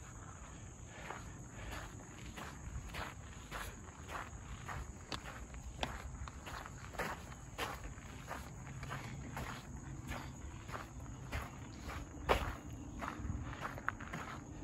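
Footsteps crunching on a gravel path at a steady walking pace, about two steps a second. A steady high chirring of crickets runs underneath.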